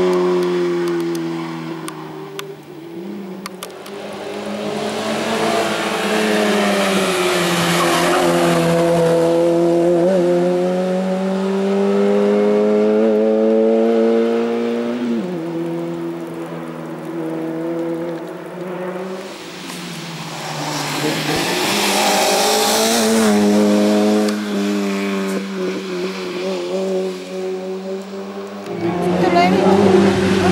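Peugeot 106 Rally's four-cylinder engine driven hard up a hill-climb course, its pitch climbing under full throttle and dropping sharply at each gear change or lift for a corner. It is loudest as it passes about eight seconds in and again around twenty-two seconds, with a hiss of tyre noise at those moments.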